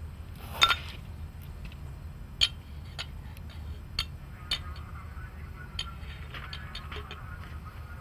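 Hand lever grease gun clicking as it is worked, pushing a small dab of white lithium grease into a metal pump cylinder: a handful of short sharp clicks spread through the stretch, with a cluster of small ticks a few seconds from the end. A steady low hum runs underneath.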